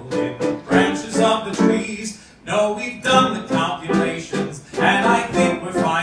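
A live musical-theatre song: a man singing over guitar accompaniment, with a brief drop in the music a little after two seconds in.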